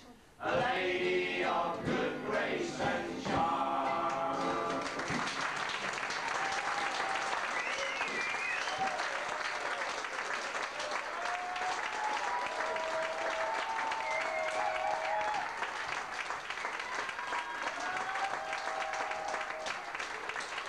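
A group of male voices singing the last line of a folk song together, ending about five seconds in. Then an audience applauding, with a few cheers over the clapping.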